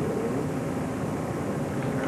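Steady hiss and rumble of background noise, even in level, with no distinct event.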